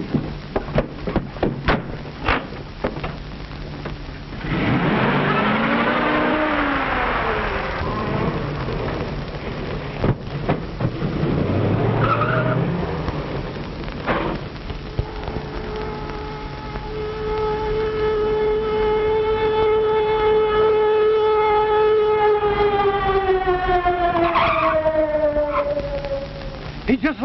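Car-chase sound effects on an old film soundtrack: sharp clicks at first, then tires squealing in two bursts. After that a police siren holds one steady note and winds down, falling in pitch near the end.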